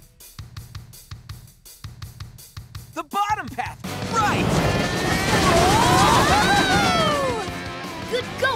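Cartoon soundtrack: a steady drum beat plays quietly, then about four seconds in a loud rushing sound effect sweeps in, with sliding vocal cries over it.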